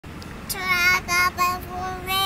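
A young child singing four short held notes on nearly the same pitch.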